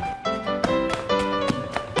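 Background music, over a few dull taps from a glass wine bottle pounding steamed sweet potato against the bottom of a metal pot, mashing it into dough for fried sweet potato balls.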